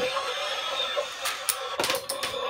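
A battery-powered toy Batmobile's electric motor and plastic gears whirring steadily as it raises itself into its battle mode. A few sharp clacks come in the second half, as it launches two plastic discs.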